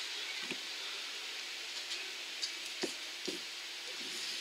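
Steady hiss of an electric fan running, with a few faint clicks and taps from a nail polish bottle and plastic swatch wheel being handled.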